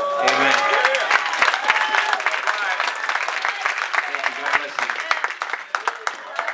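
Audience applauding with fast, dense clapping, with a few voices calling out over it in the first second or so.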